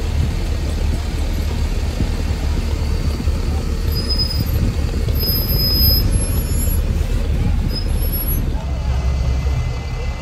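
Low, steady rumble of large diesel buses idling along the roadside, with indistinct voices in the background and a few brief high squeaks around the middle.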